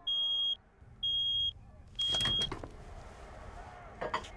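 Microwave oven beeping at the end of its cycle: three high, steady beeps about a second apart, each about half a second long, followed by a couple of sharp clicks.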